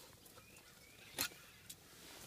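A single sharp metal click about a second in, with a fainter tick shortly after, as a snowplow mounting pin is pulled out.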